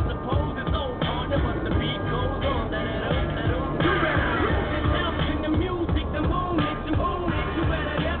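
A pop song with a singing voice playing from the car's CD player, heard inside the cabin.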